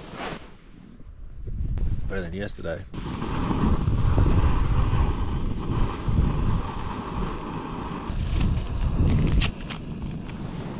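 Wind buffeting the microphone, a low rumble that runs throughout. A short wavering sound comes about two seconds in. A steadier rushing noise starts suddenly about three seconds in and stops shortly before the end.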